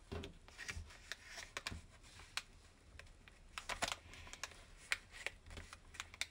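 Sheet of origami paper being folded and creased by hand: soft rustling with irregular sharp little clicks and crackles as the fingers press the folds flat.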